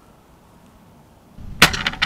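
A heavy crossbow (an 860 lb draw) loosing a bolt about one and a half seconds in: a single sharp crack followed by a brief rattle.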